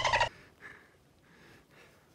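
A man laughing loudly in rapid pulses, cutting off about a quarter second in, followed by faint background noise.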